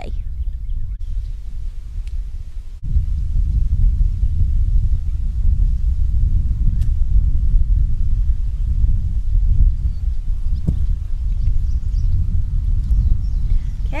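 Wind buffeting the microphone: a steady low rumble that steps up suddenly about three seconds in.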